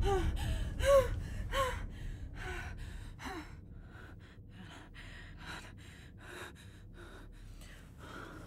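A woman gasping for breath in panic: sharp voiced gasps with a falling pitch, about one every 0.7 s, that fade after about three seconds into softer, quieter breathing.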